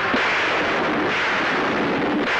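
A dramatic film sound effect: a loud, sustained roar of noise, held steady with no break.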